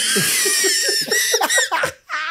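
Men laughing hard: rapid pulses of laughter with a high-pitched, squealing giggle over them, cutting off abruptly near the end.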